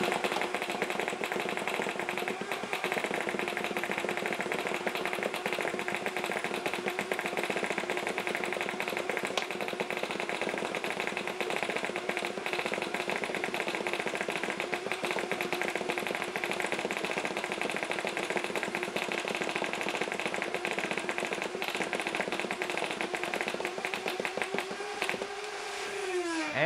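Nerf Rival Prometheus-based flywheel blaster firing continuously on full auto at about ten rounds a second. The flywheel motors whine at a steady pitch under a dense rattle of foam balls being fired and striking a hanging towel target.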